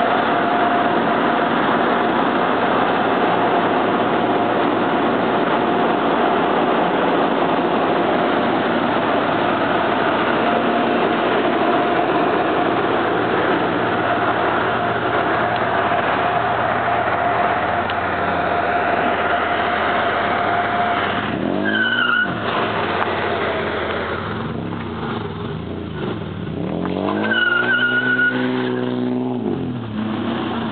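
Nissan Maxima doing a burnout: engine held at high revs with tires squealing for about twenty seconds, then two revs near the end, each rising and falling in pitch.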